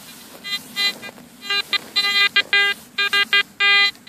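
Garrett AT Gold metal detector's audio giving irregular short beeps at one steady pitch as the coil is swept over grass, sparse at first and coming thick and fast after about a second and a half. It is false-signalling with no target: erratic chatter the owner cannot cure by changing discrimination, frequency, sensitivity or threshold, with no power line within a quarter mile.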